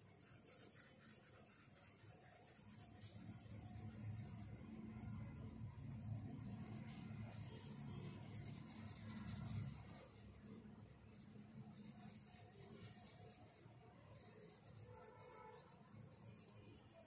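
Faint scratching of a coloured pencil shading across drawing paper in quick back-and-forth strokes, louder for a few seconds in the middle.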